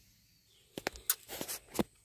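Near silence, then a quick scatter of light, sharp clicks and knocks lasting about a second.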